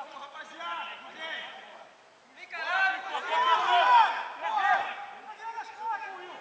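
Men's voices talking and calling out, too indistinct for words to be made out, busiest and loudest from about two and a half to four and a half seconds in.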